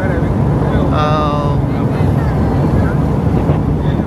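Steady low road and engine rumble of a vehicle driving at speed on a paved highway, with wind on the microphone. A brief held voice-like note sounds about a second in.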